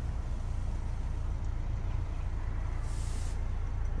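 Toyota Corolla 1.4 D-4D four-cylinder turbodiesel idling, a steady low rumble heard from inside the cabin, with a brief hiss about three seconds in.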